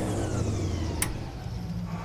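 Hovercraft lift engine and fan winding down just after being switched off: a low hum with a faint falling whine, and a sharp click about a second in.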